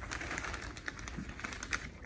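Wire whisk clicking and scraping against the inside of a cast iron Dutch oven as shredded cheddar is poured into the mixture: a run of light, irregular clicks.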